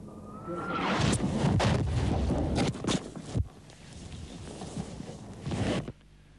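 Artillery shells bursting close by: a faint whistle rising slightly, then a sharp crack about a second in followed by several more bangs and rumble, which stop abruptly after about three and a half seconds, leaving a quieter rumble with one more crack near the end.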